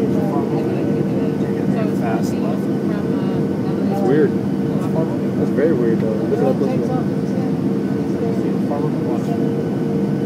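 Steady cabin drone of a Southwest Airlines Boeing 737 on final approach, its jet engines and airflow heard from inside the cabin by the wing, with a constant low hum.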